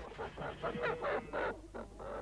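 Farmyard fowl calling: a quick run of short, honking calls, fairly quiet, as a flock of birds is let in.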